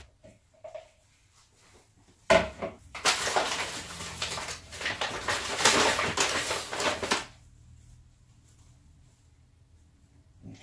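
Paper flour bag crinkling and rustling as flour is shaken out of it into a bowl, starting suddenly about two seconds in and lasting about five seconds.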